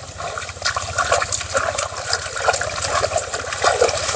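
Hands splashing and sloshing in shallow river water, a run of small irregular splashes. A low steady rumble lies underneath.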